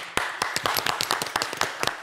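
A few people clapping their hands, with quick, irregular claps that overlap.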